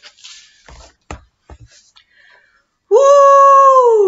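A woman's voice calls out a long, loud "woo" about three seconds in, held steady and then gliding down in pitch. Before it there are only faint rustles and a few soft knocks as the picture book is handled and lowered.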